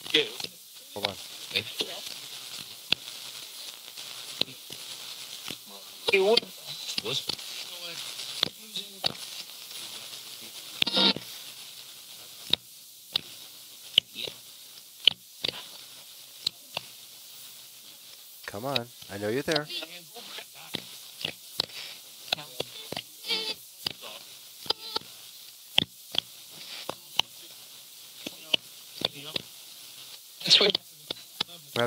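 Paranormal Systems MiniBox Plus ghost box sweeping the AM band: steady static hiss chopped by rapid, irregular clicks as it jumps between stations. Split-second fragments of radio voices come through, clustered around six seconds in and again near the twenty-second mark.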